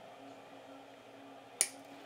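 One sharp snip of small side cutters cutting the excess off a tinned copper wire end, about one and a half seconds in, over faint room hum.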